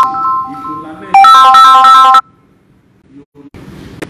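A bright electronic melody of quick repeated notes, like a phone ringtone, played twice. It breaks off suddenly a little after two seconds in.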